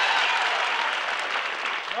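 Studio audience applauding, easing off slightly toward the end.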